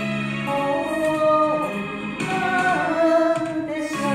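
A woman singing a slow Japanese enka ballad with vibrato over a karaoke backing track of band and strings.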